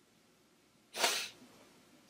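A woman's single short, sharp sniff, about a second in, the breath of someone near tears; otherwise near silence.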